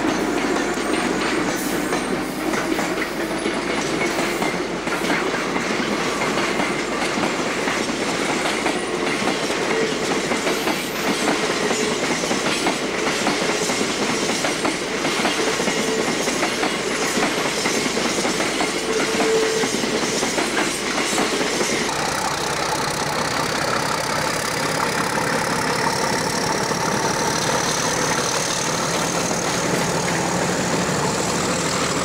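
A freight train of container wagons hauled by a Class 90 electric locomotive passing, its wheels going clickety-clack over the rail joints. About three-quarters of the way through, this gives way to a Class 31 diesel locomotive's engine running, with a high whine rising steadily in pitch.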